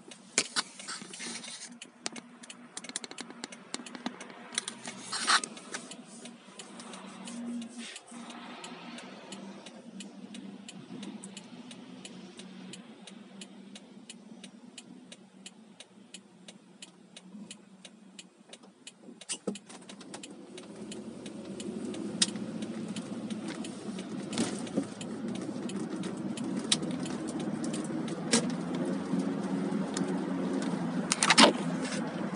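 Car interior sound: a quiet idle with scattered small clicks and rattles while stopped, then about twenty seconds in the engine and road noise rise as the car pulls away and drives on.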